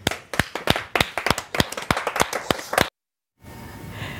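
Hands clapping in quick, irregular claps that cut off suddenly about three seconds in, followed by faint room tone.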